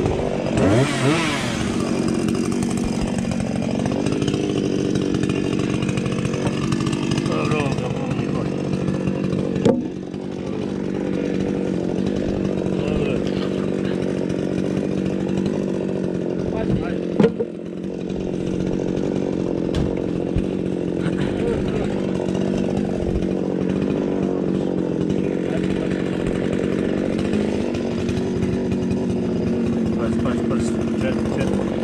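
Two-stroke chainsaw running at a steady idle, with a brief rev about a second in and two short sharp knocks, each followed by a momentary drop in the engine sound, around the middle.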